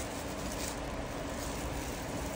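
Steady background noise, an even hiss with no distinct events.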